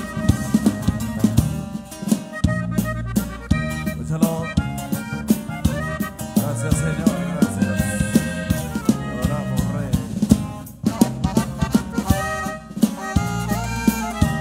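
Live band playing the instrumental introduction to a song, with drum kit, saxophone and electric bass over a steady beat.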